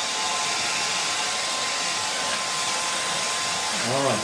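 Hand-held hair dryer blowing steadily on a wet watercolour painting, an even rushing noise with a faint steady whine.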